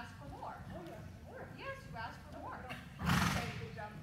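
A ridden horse trotting close by on the soft dirt footing of an indoor arena, with a loud, short rushing burst about three seconds in.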